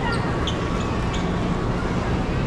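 Steady outdoor urban background noise in an open-air plaza: an even rumble with no clear single source.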